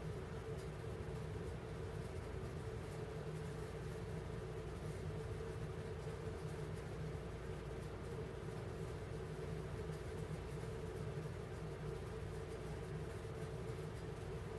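Steady background hum with a faint constant tone and low rumble, with no distinct events: room tone.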